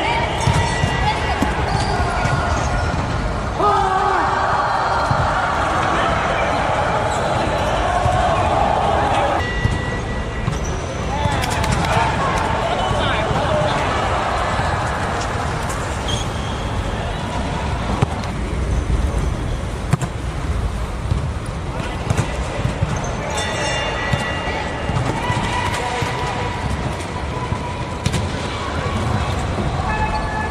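Volleyballs being hit and bouncing on a gym floor during play, sharp knocks scattered throughout, with players' indistinct voices and calls.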